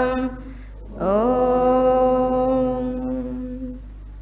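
A woman's voice chanting a Sanskrit invocation shloka to the line of gurus in long, drawn-out notes. A held note dies away, and after about a second's pause a new note slides up in pitch and is held steady for nearly three seconds before it stops.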